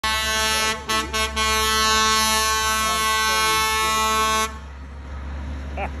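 Fire engine air horn: a couple of short blasts, then one long steady blast held for about three seconds that cuts off suddenly. The truck's engine rumbles underneath, and a person laughs near the end.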